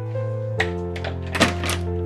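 A few clicks and thunks of a door handle and lock being worked on a locked front door, the loudest about halfway through, over soft background music with held notes.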